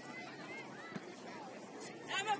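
Faint, distant voices of players and spectators calling across an outdoor soccer field, with a soft knock about a second in.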